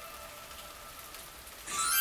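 Steady rain falling, an even hiss of drops on surfaces.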